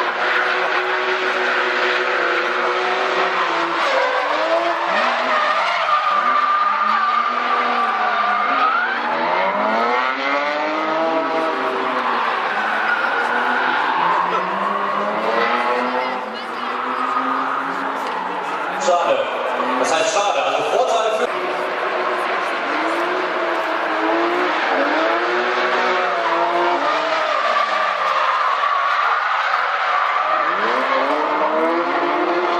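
Drift cars sliding through corners in a tandem run. The engines rev up and down constantly over the haze of screeching tyres, with one long steady tyre squeal a few seconds in.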